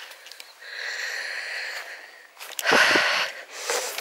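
A person breathing in twice through the nose to catch a scent, the smell of mint. The first breath is soft, about a second in, and a louder, longer one follows about two and a half seconds in.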